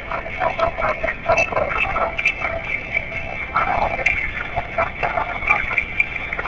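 Tinny, muffled mix of indistinct voices and room noise, played back through a phone's small speaker, with scattered short clicks.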